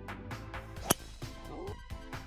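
A single sharp crack, about a second in, of a driver's clubhead striking a teed golf ball, over background music with a steady beat.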